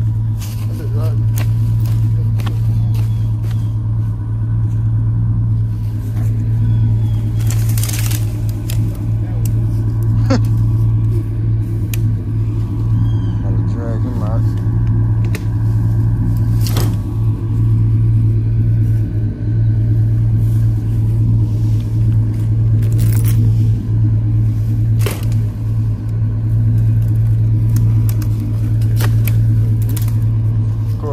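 Chevrolet Silverado pickup's engine running steadily at a low, even hum, its chain hitched to logs to drag them out. A few sharp clicks and knocks sound over it.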